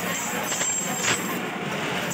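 Street traffic noise: a steady mixed hiss and rumble of passing vehicles, with a short sharp click about a second in.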